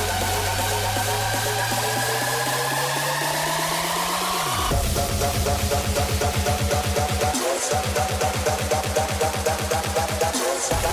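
Hardstyle electronic dance music mixed live by a DJ. A rising build-up runs for about four and a half seconds, then the beat drops into a fast, even bass rhythm, with a short break about three and a half seconds before the end.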